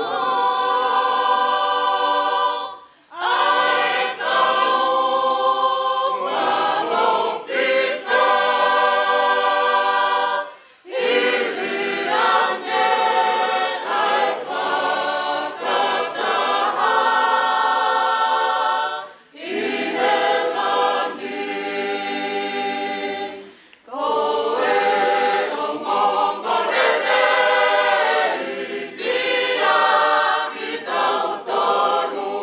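Mixed choir of men and women singing unaccompanied in Tongan, in long held phrases with brief pauses for breath between them.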